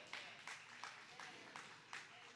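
Faint, sparse hand clapping from one or a few people, about six claps over two seconds.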